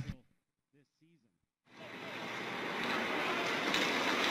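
The broadcast sound drops to near silence, then from about a second and a half in the ice-hockey rink sound fades in: a steady, even noise of play on the ice, skates and sticks, that swells up and holds.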